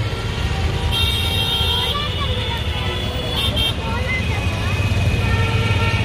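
Busy road traffic: a steady low rumble with vehicle horns honking, one held for about a second near the start and another shorter blast a little later.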